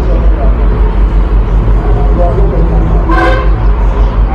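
A vehicle horn toots once, briefly, about three seconds in, over a loud steady low rumble.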